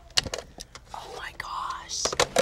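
A few soft clicks of plastic DVD cases being handled on a shelf, then a faint whispered voice.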